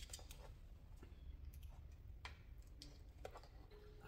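Faint scattered plastic clicks and taps of a power adapter and plug being handled and plugged in, over a low steady room hum.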